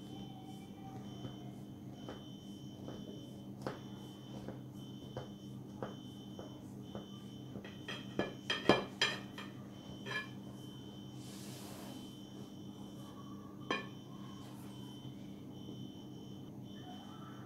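Kitchen knife cutting through stacked, butter-brushed baklava pastry sheets in a glass pie dish: faint scattered clicks and crackles, with a cluster of sharper ticks about eight to nine seconds in as the blade reaches the rim of the glass dish, over a steady faint hum.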